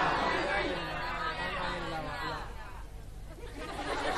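Audience chatter, many voices at once, dying down about halfway through.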